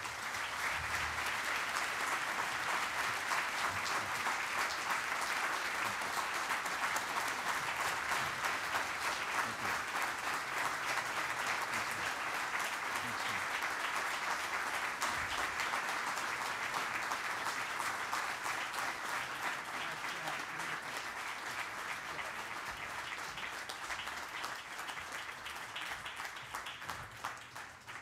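Large audience applauding in a standing ovation: a dense, steady clapping that slowly thins and softens towards the end.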